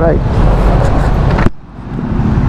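Wind buffeting and road rumble from riding a Yamaha scooter in traffic. It cuts off suddenly with a click about one and a half seconds in.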